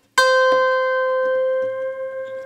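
A single swarmandal (Indian zither) string plucked once just after the start, ringing on with one clear, steady pitch and bright overtones, slowly fading.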